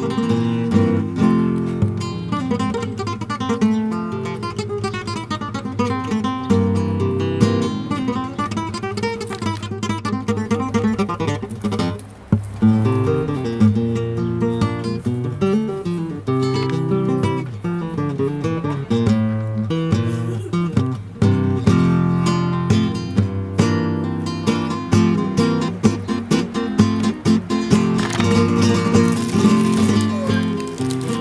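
Background music played on acoustic guitar, strummed and plucked, with a brief break about twelve seconds in.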